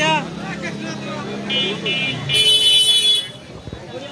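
A vehicle horn honking over market chatter: a short toot about one and a half seconds in, then a louder, longer honk lasting about a second.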